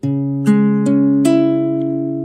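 Nylon-string classical guitar (Eagle MN860, capo at the second fret) fingerpicking a B minor chord shape as an ascending arpeggio from the fifth string to the second: four notes plucked one after another, each left to ring on.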